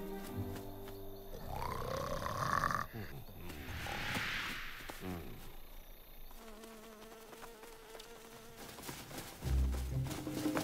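Cartoon soundtrack with soft music, then a rising swooshing glide, a whoosh, some held tones, and a sudden low thud near the end.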